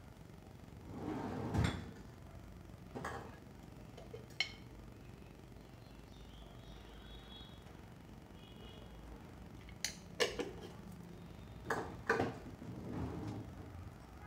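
Scattered clinks and knocks of steel kitchen utensils and dishes being handled, with several close together near the end.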